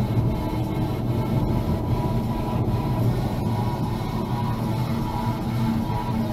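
Steady engine and tyre rumble inside a car's cabin, driving at around 50 km/h, with music playing faintly.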